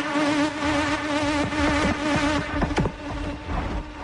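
Techno from a DJ set: a buzzing, wavering synth drone over a deep bass. The drone fades a little after halfway, leaving bass and sharp percussion hits.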